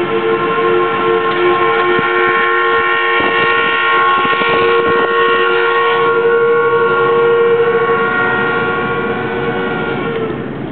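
Pulp and paper mill whistle blowing a long, loud, steady chord of several tones. One lower tone drops out a few seconds in, and the whistle cuts off near the end.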